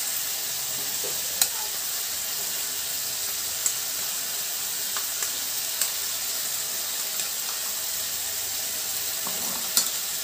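Chopped tomatoes sizzling steadily in oil in a steel kadai, with a few sharp light clicks from a steel spoon as poppy-seed paste is scraped in.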